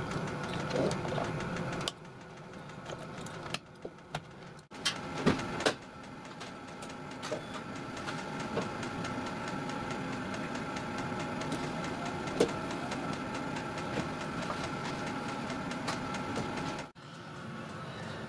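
Hyundai i10 hatchback's engine idling steadily, with a few sharp clicks and knocks before the idle settles.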